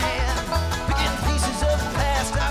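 A bluegrass band playing an instrumental passage with no singing: acoustic guitar, upright bass, banjo and mandolin picking together over a steady low beat about three times a second.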